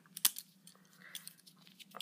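Benchmade 62 balisong trainer being handled and flipped: a few sharp metal clicks as the handles and pivots move, the loudest about a quarter second in and lighter ones later.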